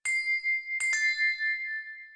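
Three bell-like struck chime tones, high and clear. One sounds at the start and two more follow close together just under a second in, each ringing on and fading away.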